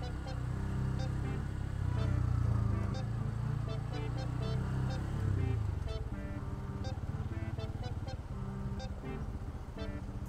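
Engine noise from a motorcycle and the idling traffic around it as the bike creeps through a jam, with background music over it. The heavy low engine sound eases about six seconds in.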